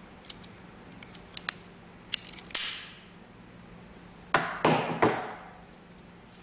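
Hand-held solar cable stripper at work: a few light clicks, then sharp snaps as its blades cut and the insulation is pulled off the cable, the loudest three in quick succession near the end.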